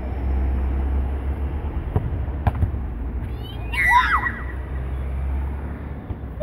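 A football being kicked, heard as two sharp knocks about half a second apart roughly two seconds in, over a steady low rumble of wind on the microphone. A brief shout comes near four seconds.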